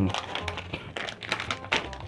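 Crinkly plastic snack bag being handled and shaken, a rapid, irregular run of light crackles and clicks.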